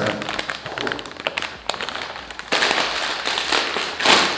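Plastic potato chip bag being handled close up: a run of small crackles, then a louder, continuous crinkling for the last second and a half.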